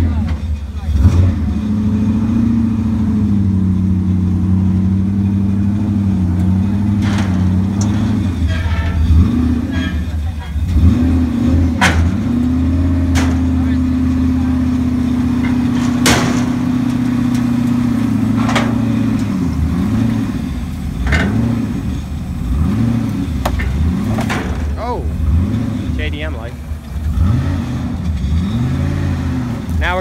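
Turbocharged Mazda Miata's engine running at held, steady revs and then rising and falling as the car is driven off a car trailer, with a few sharp knocks along the way.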